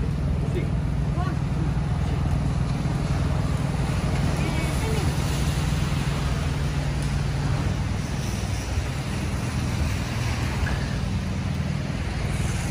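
A food truck's motor running with a steady low hum that fades after about eight seconds, over the hiss of rain and traffic on wet streets.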